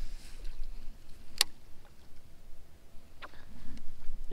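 Wind rumbling on the microphone on an open boat, with one sharp click about a second and a half in and a fainter click near the end.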